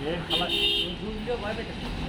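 A short vehicle horn toot about half a second in, over men talking.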